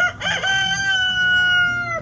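A rooster crowing: a few short choppy notes, then one long held note that sinks slightly in pitch before it cuts off.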